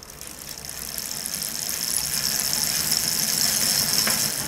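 A bicycle wheel spinning fast, giving a high-pitched whirr that grows steadily louder as it speeds up.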